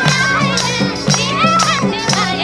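Live Nepali folk music: a bamboo flute melody with held and gliding notes over a steady madal hand-drum beat, about four strokes a second, with hand clapping and voices of the group joining in.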